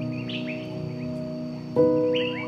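Soft piano chords ring out and slowly fade, and a new chord is struck near the end. Birds chirp over them in short rising calls.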